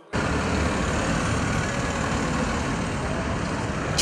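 Steady street noise of city buses, with a bus engine running close by. It starts abruptly and stays even throughout.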